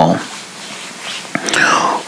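A pause in a man's spoken monologue: his word trails off, then a low steady hiss, a small mouth click, and a breathy intake of breath near the end before he speaks again.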